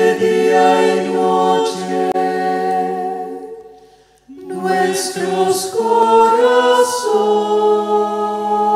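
Unaccompanied voices singing a slow hymn in long held chords. The first phrase fades out about four seconds in, and a new phrase begins at once.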